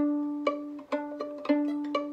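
Violin played pizzicato: about six plucked notes roughly half a second apart, mostly on the same ringing D natural, each sounding and fading away.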